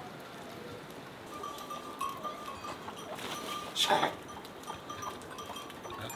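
Pack mules in a pen, with one short, loud animal sound about four seconds in, over faint, broken high tones.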